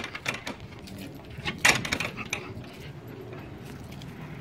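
A small black slatted gate rattling and knocking a few times as a dog tugs at it to pull it open, the loudest knocks about a second and a half in.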